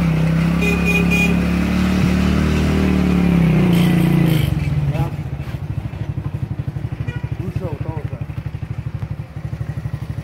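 Pickup truck engine running loudly with a steady drone for about four and a half seconds, then settling into a rapid, even chugging.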